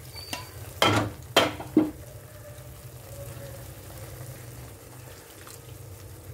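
Thick masala gravy with cashew paste sizzling softly in a nonstick kadai on low flame. Three sharp clinks come about one to two seconds in.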